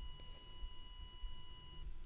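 A faint, steady, high-pitched electronic whine made of several pure tones over a low background rumble. The higher tones cut off shortly before the end, leaving the lowest one.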